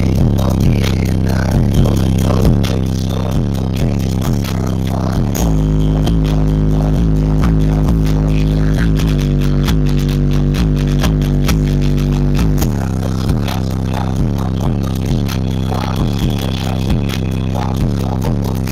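Bass-heavy music played loud through a car audio system built around two Rockville Punisher 15-inch subwoofers, heard from inside the car. The deep bass notes are held and change every second or so.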